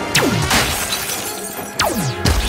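Sci-fi ray-gun blasts, two sharp shots each with a steeply falling zap, one at the start and one near the end. Glass shattering comes about half a second in, over loud film score music.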